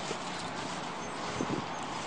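Steady outdoor background hiss with a few soft footfall thumps on grass about one and a half seconds in.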